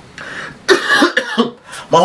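A man coughing into his fist: a short intake of breath, then a quick run of coughs starting about two-thirds of a second in.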